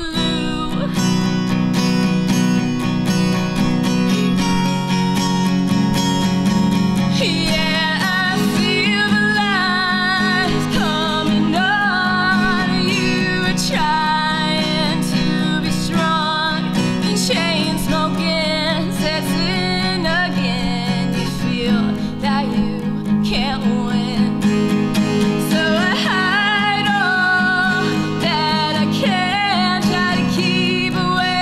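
Live solo acoustic performance: a strummed steel-string acoustic guitar playing steady chords, with a woman's singing voice coming in over it about eight seconds in and carrying the melody.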